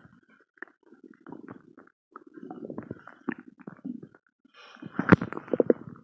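A bloated belly gurgling and rumbling after eating Mentos, heard close up through an earphone microphone pressed against the skin. Scattered small gurgles and clicks build into a churning stretch, with the loudest gurgling burst about five seconds in.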